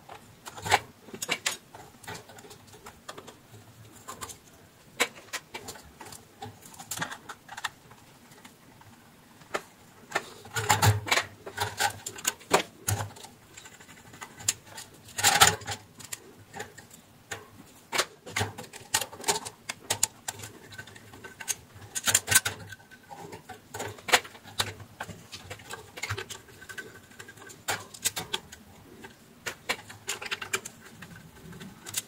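Irregular clicks, taps and knocks of a screwdriver and pliers working on a wall fan's metal motor housing and plastic parts as the motor is taken apart, with a few louder knocks.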